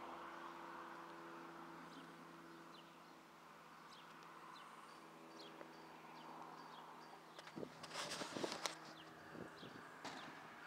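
Quiet roadside ambience: a faint distant engine drone that fades away, a few short high bird chirps, and a burst of rustling and knocks near the end as the camera is handled and turned.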